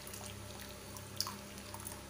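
Custard mixture pouring in a thin stream into a pan of hot milk while a ladle stirs it, with one sharp click a little past a second in, over a steady low hum.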